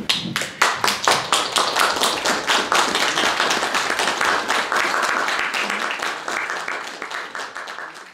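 Audience applauding. The clapping starts abruptly, goes on steadily and thins out near the end.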